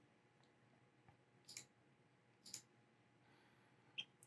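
Near silence broken by a few faint computer mouse clicks, about a second apart.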